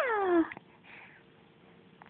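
A three-month-old baby cooing: a high, drawn-out vocal sound that falls in pitch and fades out about half a second in, then a faint breath.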